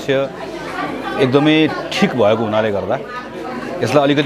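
Only speech: a man talking, with other voices faintly behind.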